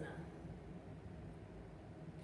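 Quiet room tone: a steady low hum with faint hiss and no distinct events.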